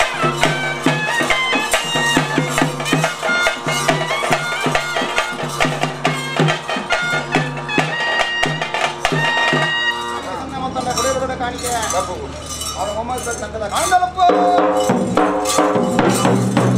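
Bhuta kola ritual music: a reedy pipe plays a melody over dolu drums keeping a steady beat. About ten seconds in the drum beat drops out and wavering, gliding tones take over, then a new, fuller pattern starts near the end.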